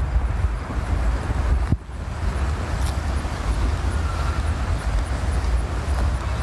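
Wind buffeting a smartphone's built-in microphone during a handheld walk: a steady, gusting low rumble with a brief drop a little under two seconds in.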